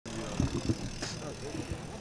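Faint voices of people nearby over quiet outdoor background, with a few soft low knocks about half a second in and a brief hiss near one second.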